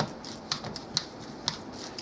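Metal fork mashing soft, overripe bananas in a plastic bowl, the tines clicking against the bowl about twice a second.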